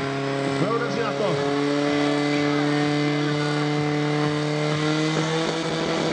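Portable fire pump engine running steadily at high revs while it drives water through the attack hoses. Its pitch rises a little about a second in. People are shouting over it.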